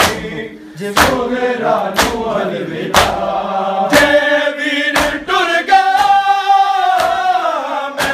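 Men chanting a noha lament together, with a sharp chest-beat (matam) struck by the whole group in unison about once a second.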